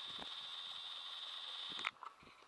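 A steady high-pitched tone held at one pitch for almost two seconds, then cutting off suddenly near the end, over faint hiss.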